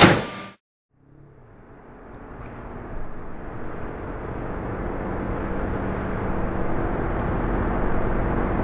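A sharp hit right at the start, a moment of dead silence, then a low rumbling drone fades in and grows steadily louder.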